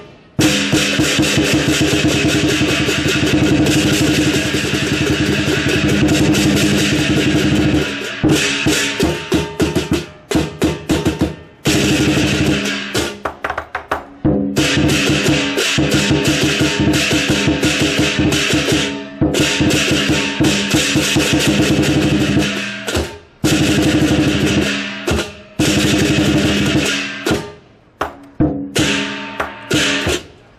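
Lion dance percussion: a large lion dance drum beaten in fast rolls and strokes, with crashing cymbals and a gong ringing over it. The playing breaks off briefly several times and starts again.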